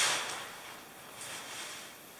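Soft rustling hiss of ridgeline cord being handled and drawn through a carabiner, strongest at the start and fading, with a faint brief rustle about a second in.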